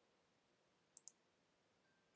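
Near silence with a quick double click of a computer mouse button about a second in.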